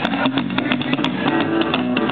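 Live rockabilly instrumental: a strummed acoustic guitar and a plucked upright double bass playing together with a steady, even beat.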